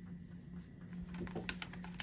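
Light paper rustling and soft ticks from a greeting card being handled and drawn out of its envelope, over a steady low hum.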